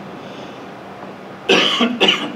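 A man coughs about one and a half seconds in, a sudden loud burst after a quiet pause.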